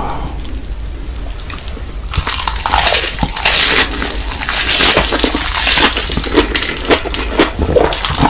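Close-miked eating sounds: a bite into roasted seaweed wrapped around fried instant noodles and kimchi, then loud crisp crunching and wet chewing with many sharp crackles, starting about two seconds in.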